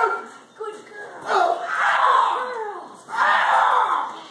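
A man yelling without words in loud bursts of about a second each, while a K9 dog bites and holds his arm.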